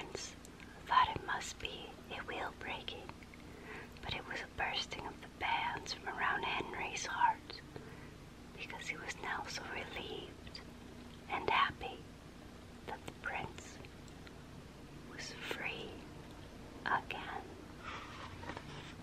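A woman whispering in short phrases close to the microphone, with small wet mouth clicks between them.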